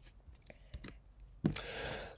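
A few faint clicks, then a short breath drawn in, heard as a soft rush, about a second and a half in, just before speaking resumes.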